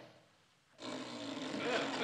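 A baby blowing a raspberry, a sustained buzzing of the lips starting about a second in, given as a rude verdict on the dress.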